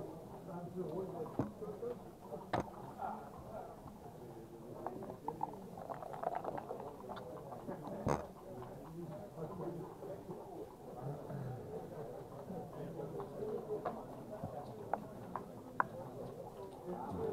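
Backgammon checkers and dice clicking on a wooden board: a handful of separate sharp clicks, the loudest about two and a half seconds in and about eight seconds in, with a few more near the end, over a steady murmur of voices in the room.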